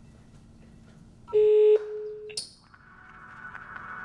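A single loud electronic beep, a steady buzzer-like tone about half a second long that drops to a fainter tone for another half second, followed by a brief high swish. Music then fades in and grows louder.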